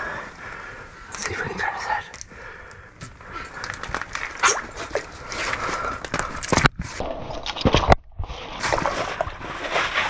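Water sloshing and splashing in an ice-fishing hole as a hooked walleye is brought up into it and grabbed by hand, with irregular clicks and handling noise. The sound cuts out briefly twice near the end.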